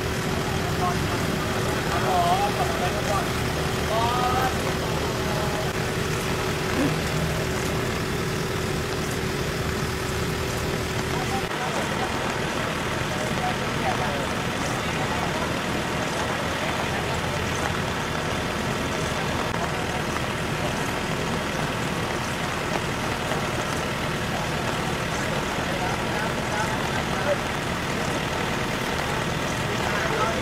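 Steady outdoor road noise of traffic and idling vehicles with scattered faint voices. A steady hum in it stops abruptly about eleven seconds in.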